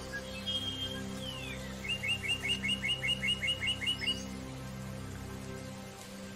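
A songbird calling over soft, sustained spa-music chords: a few short notes and a falling whistle, then a quick run of about a dozen evenly repeated chirps lasting about two seconds.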